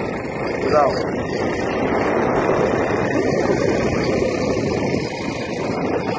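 Steady riding noise from a small motorcycle on the road: its engine running, mixed with wind rushing over the microphone.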